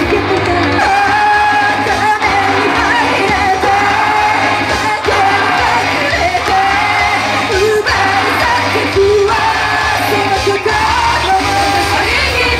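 A pop-rock song played loud over a PA, with female voices singing the melody into microphones.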